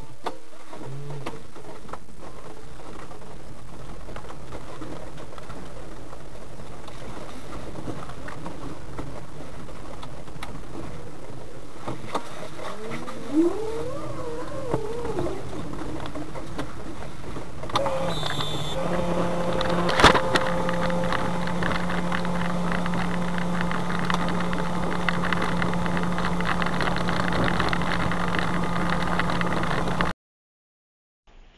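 Cabin noise of a small plastic-bodied Puli electric car driving on a snowy road, a steady rumble. From a little past halfway a steady low hum joins it, and there is one sharp click shortly after.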